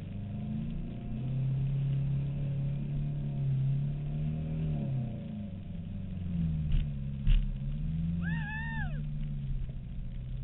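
4WD's engine running and revving up and down as it drives over a rough dirt track. Two sharp knocks come about seven seconds in, then a short high squeal that rises and falls.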